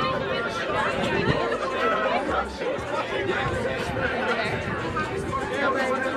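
A crowd of people talking at once, many overlapping voices in steady chatter.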